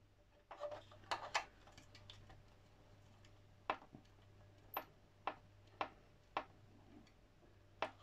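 Small precision screwdriver turning a tiny screw into a plastic model part. There is a cluster of faint clicks near the start, then single light clicks about twice a second as the blade is reset in the screw head with each turn.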